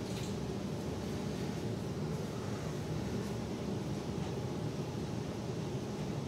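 Steady low background hum and hiss with no distinct events, like room ventilation noise.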